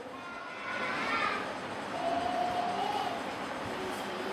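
Steady background noise in a pause between speech, with faint, distant voices.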